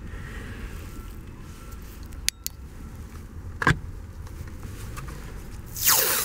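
Low steady background hum with a couple of faint clicks and one knock from tools on the steering column, then near the end a strip of tape pulled and torn off its roll, loud and noisy.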